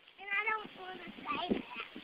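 A young child's high-pitched voice calling out twice in quick succession, followed by a short knock.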